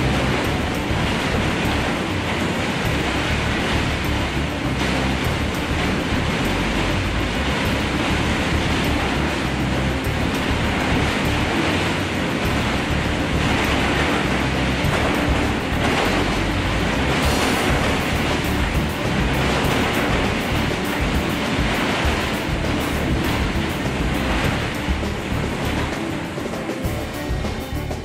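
A 60,000-pound MTU 3,250 kW diesel generator set being shaken on a shaker table in a simulated earthquake test: a steady, loud, noisy din, with music underneath.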